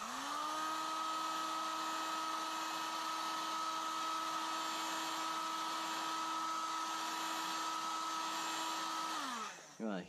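Electric heat gun blowing hot air onto lure tape on a metal spoon. It is switched on and its fan spins up to a steady hum with an airy hiss, then it is switched off and winds down just before the end.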